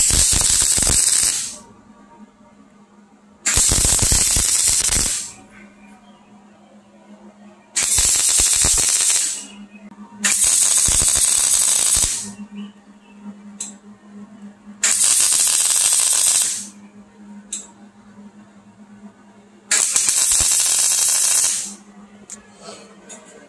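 MIG welding arc crackling on a stainless steel V-band flange, laid down in six short runs of about one and a half to two seconds each, a few seconds apart. A low steady hum sits underneath between the runs.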